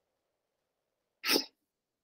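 A single short, sharp burst of breath noise from a person a little over a second in, with near silence around it.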